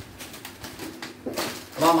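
Plastic snack bag crinkling as it is pulled open, with a sharp rip of noise about a second and a half in. A voice starts a repeated chant right at the end.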